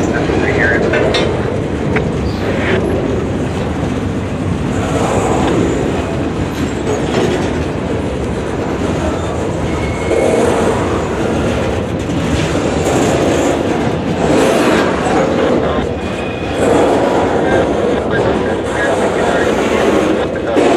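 Freight cars of a mixed manifest train rolling past at close range: a steady, loud rumble and rattle of steel wheels on the rail, with occasional clicks of wheels over rail joints.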